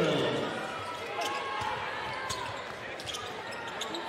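Basketball dribbled on a hardwood court in a large gym, a few separate bounces over a steady crowd murmur, with faint voices in the arena.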